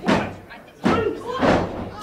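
Three heavy thuds on a wrestling ring's mat, a little under a second apart, the first right at the start.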